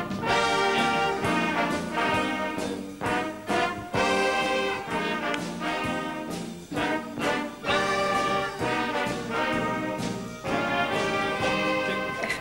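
A jazz big band's horn section (saxophones, clarinet, trombones and trumpets) playing a passage of held chords, in phrases with short breaks between them.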